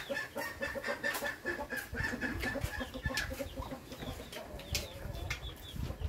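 A hen clucking in a steady rapid run of short clucks, several a second, that fades after about three seconds. A few light clicks sound over it.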